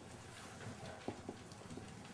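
Marker pen writing on a whiteboard: faint short strokes and light ticks as the letters are drawn, a few stronger ones about a second in.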